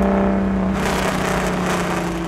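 Ferrari 412P tribute race car's V12 engine held at high, steady revs, loud and with almost no change in pitch, easing off slightly towards the end.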